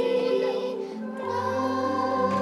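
Music: a choir singing long held notes over a steady low bass.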